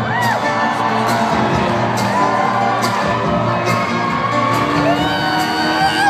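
Live acoustic string band, with cello and upright bass, playing an instrumental passage between sung lines, with whoops and cheers from the audience over it.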